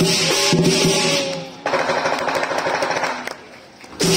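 Lion dance percussion: cymbals and gong ringing over the drum, then after a brief break about a second and a half in, a fast roll of rapid strikes that fades away near the end.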